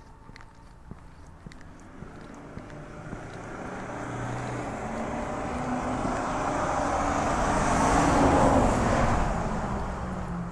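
A car approaching and passing on the road, its engine and tyre noise growing steadily louder to a peak about eight seconds in, then starting to fade.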